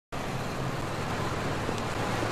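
Street traffic noise: the steady low drone of car engines with an even hiss of passing traffic, starting abruptly just after the beginning.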